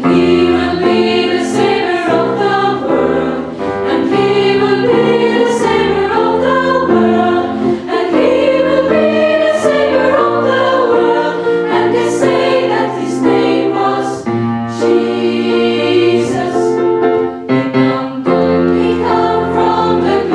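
Girls' choir singing in several parts, holding full chords that move from one to the next, with the sung consonants hissing through now and then.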